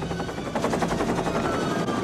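Police helicopter's rotor chopping in a rapid, even beat over a low steady engine hum, with a faint falling whine in the second half.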